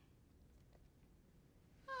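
Near silence: faint room tone, with a man's voice starting right at the end.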